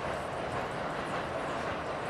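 Steady running noise of a subway train, heard from inside the car.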